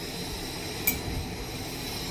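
One light metallic clink of a steel spoon against the steel pressure-cooker pot, just under a second in, over a steady low background hum.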